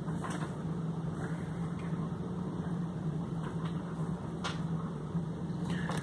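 A steady low hum, with a few faint short knocks and rustles as a framed painting is handled.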